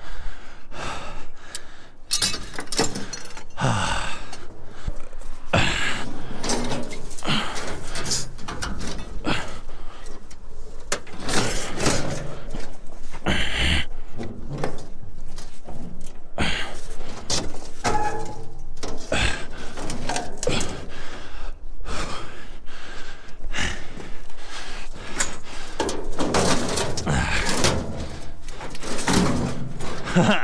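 Irregular clunks, knocks and scraping as scrap metal and a loaded sled are hauled and handled over snow and ice.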